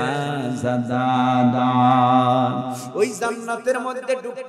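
A man chanting a sermon in a melodic, sung style into microphones: he holds one long steady note for over two seconds, then goes on in shorter sung phrases near the end.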